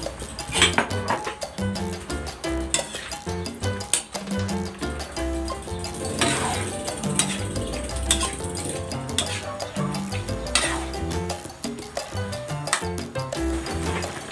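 Background music with a steady beat, over a metal ladle scraping and clinking against a wok as chicken and pork pieces in adobo sauce are stirred, a sharp scrape every second or two.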